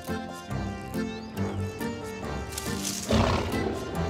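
Cartoon background music with held notes. About three seconds in, a tiger growls loudly over it.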